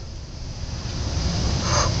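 Low rumbling outdoor background noise with a hiss, growing steadily louder.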